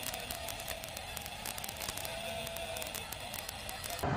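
Faint, steady outdoor background noise, dotted all through with many small clicks and crackles.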